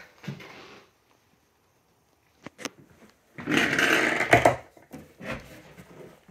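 A fold-up laminate table desk being handled: a couple of sharp light clicks, then a louder rough rubbing scrape about a second long as its hinged leg is swung up.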